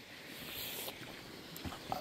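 Faint, steady outdoor background noise with no clear source, and a couple of light ticks near the end.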